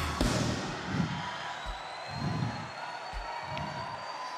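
Live church music under the preaching: held keyboard notes with low, spaced thumps, over congregation noise.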